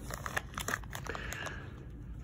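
Crinkling of a plastic blind-bag package as a hand rummages inside it and draws out a folded checklist card. The crackles come in short bursts during the first second and die down near the end.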